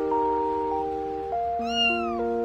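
A single high-pitched kitten meow near the end, rising slightly and then falling, over background music of sustained notes.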